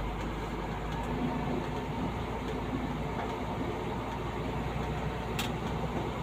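Vehicle engine and road noise heard from inside the cab as it rolls slowly forward, a steady low hum with one short click near the end.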